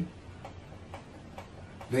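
Three faint ticks about half a second apart in a pause between a man's words, which resume near the end.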